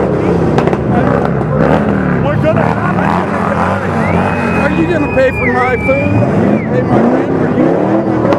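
Street traffic: car engines running and passing, mixed with a crowd's voices. A high, steady whistle-like tone sounds for about two seconds around the middle.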